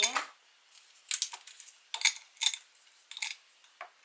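Metal coffee capsules clinking against each other and the glass as they are dropped into a glass storage jar: a series of light, sharp clinks, about one every half second.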